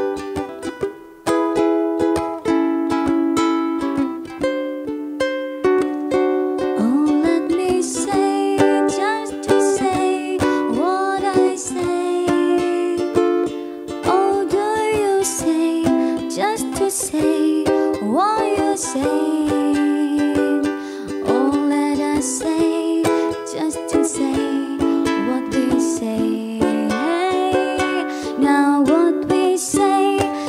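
Ukulele played, picking a melody over its chords alone for the first several seconds; from about seven seconds in a woman's voice sings over it.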